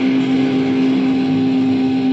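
Psychedelic rock band playing live: a loud, dense, noisy wash of electric instruments over one steady held note, part of a free-form improvised jam.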